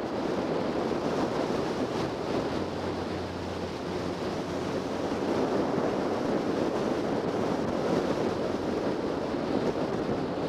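Wind rushing over the camera microphone on a moving motorcycle, with the bike's engine running steadily underneath; the low engine tone fades a little under four seconds in.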